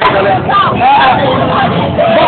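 Loud, overlapping voices and chatter of a crowd of people talking.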